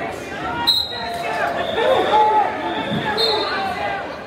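Spectators' voices calling out and talking in an echoing gymnasium during a wrestling bout. Two short, shrill high tones cut through, one just under a second in and one about two and a half seconds later.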